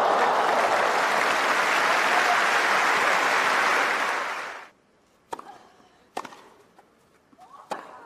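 Crowd applauding on a tennis centre court after a point, cut off suddenly a little past halfway. Then a rally begins: three sharp racket strikes on a tennis ball about a second apart, the last with a short voice sound.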